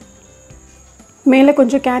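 A steady high-pitched whine over quiet room tone, then a spoken word ("carrot") near the end.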